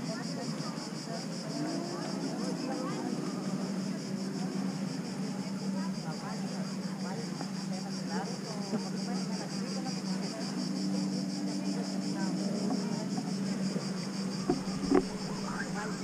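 Cicadas buzzing steadily in the trees, a high, finely pulsing drone, over a low steady hum and faint voices of people around. Two short knocks come near the end.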